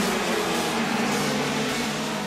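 Racing kart's single-cylinder two-stroke engine running at high revs, its pitch wavering up and down.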